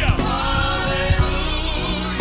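Gospel music: a choir singing long held notes over band accompaniment, with a low drum beat about once a second.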